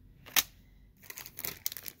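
Clear plastic sleeves holding thin metal cutting dies crinkling and crackling as they are handled, with one sharp click shortly before.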